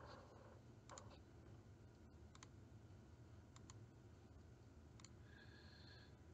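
Near silence with a few faint, sharp computer clicks scattered through it, as of a mouse or keys being used to switch slide decks, and a faint brief tone just before the end.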